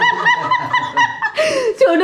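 High-pitched laughter: a quick run of short, even 'ha' pulses for about a second, ending in a breathy gasp.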